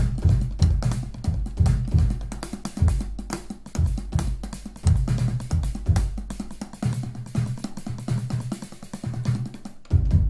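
Nord Drum four-channel drum synthesizer played live from electronic drum pads struck with sticks: a fast, busy pattern of synthesized drum hits, with deep pitched booms and sharper clicks. There is a brief pause just before a loud hit near the end.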